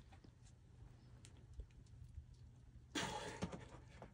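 Faint taps and scuffs of a boulderer's hands and climbing shoes on sandstone. About three seconds in comes a short, louder breathy rush as he makes a move.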